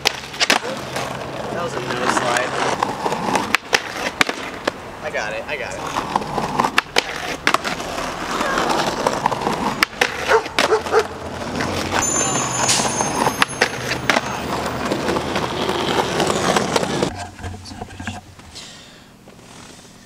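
Skateboard rolling, grinding and sliding along a concrete ledge, with repeated sharp clacks of the board popping and landing; the noise dies down near the end.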